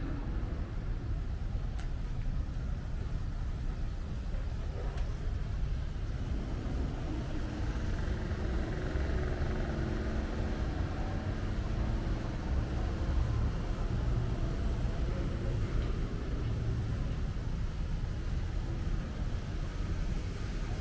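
Steady low rumble of outdoor city ambience, with a faint hum that swells in the middle and then fades.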